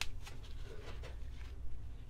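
Soft rustling and a few faint clicks of gloved hands twisting thin thermostat wires together, a knit sleeve brushing close to the microphone, over a low steady rumble.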